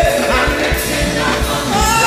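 Gospel choir singing with a live church band, a lead vocalist out in front, over a steady drum beat.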